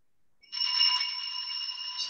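A bell struck once about half a second in, ringing with a few clear tones and slowly fading, marking the start of the Mass.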